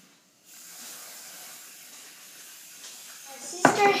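Aerosol whipped-cream can spraying cream onto a drink: one steady hiss lasting about three seconds, starting about half a second in.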